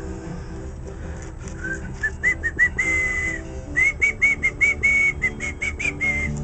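A person whistling a tune. It begins about a second and a half in as a run of short notes that climb at first, with a couple of longer held notes among them.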